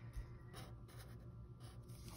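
Faint strokes of a felt-tip marker drawing lines on a paper worksheet, mostly in the first second, over a low room hum.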